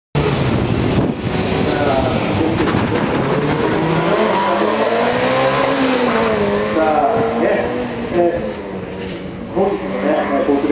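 Honda Integra DC2 engine revving hard at full throttle as the car launches and runs through a gymkhana course, its pitch rising and falling again and again with the gear changes and corners.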